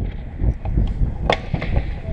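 Wind buffeting an action camera's microphone, a steady low rumble, with a couple of light knocks, the clearest about a second and a third in.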